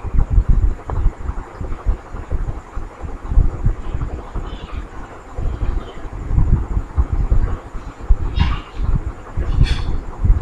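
Low, uneven rumble of air buffeting the microphone, rising and falling irregularly throughout.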